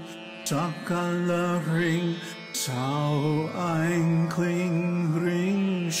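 A voice singing a Sanskrit mantra to a Carnatic-style melody, in phrases with gliding ornaments and short breaks between them, over a steady drone.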